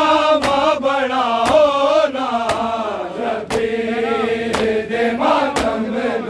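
Male voices chanting a Shia noha lament in unison, with sharp strikes of hands on bare chests (matam) keeping time about once a second.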